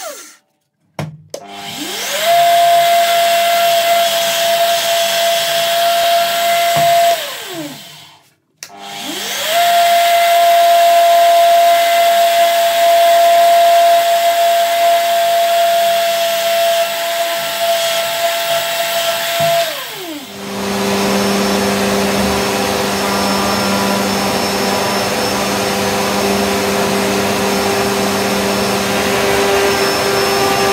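Benchtop drill press run twice while drilling holes in a wooden shelf board: each time the motor whine rises as it spins up, holds a steady pitch while the bit cuts, then falls away as it coasts down. Then, a little past two thirds of the way through, a different, rougher motor noise starts and runs steadily.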